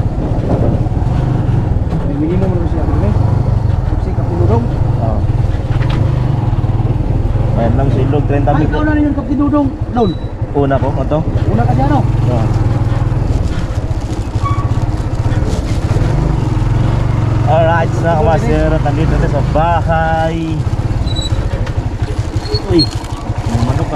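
A motorcycle engine running steadily while the bike travels, a continuous low rumble.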